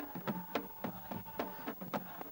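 Fast drumming, about six strokes a second, each stroke sliding slightly down in pitch, over a steady held note.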